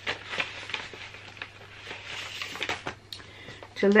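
Paper sewing pattern rustling and crinkling in irregular small crackles and ticks as it is taken out of its envelope and its printed instruction sheet unfolded.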